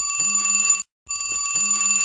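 A flip phone ringing with a trilling ringtone in rings about a second long. One ring ends just under a second in, and the next starts after a short break.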